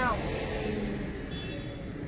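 Steady low rumble of passing street traffic, mostly motorbikes.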